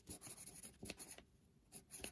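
Faint scratching of handwriting on paper, a word written in short strokes that trail off a little past halfway, with a few light ticks near the end.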